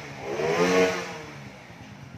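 Honda Wave 100's single-cylinder four-stroke engine idling, with a brief rise and fall in pitch in the first second. It runs smoothly and quietly, which the seller likens to an electric bike.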